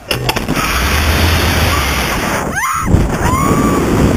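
Wind rushing hard over the microphone as a slingshot ride's capsule is launched, starting suddenly. A rider's short rising scream cuts through it about two and a half seconds in, followed by a held yell.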